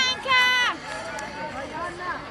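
A voice calls out one drawn-out, steady-pitched shout lasting about half a second, then only faint voices and crowd chatter remain.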